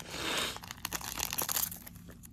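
A trading-card booster pack's foil wrapper being torn open and crinkled in the hand: a tearing rasp in the first half second, then scattered crackles.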